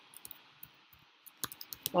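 Typing on a computer keyboard: a few scattered, quiet keystroke clicks.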